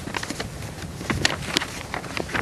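Old folded paper road map crinkling and rustling as it is opened out by hand, with a few sharp crackles, over light wind noise on the microphone.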